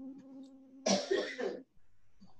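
A steady low buzzing hum, then a person coughs once, loudly, about a second in, heard through a video call's audio.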